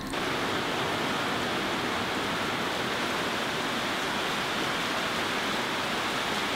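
Heavy rain falling, a steady even hiss that starts suddenly and holds level throughout.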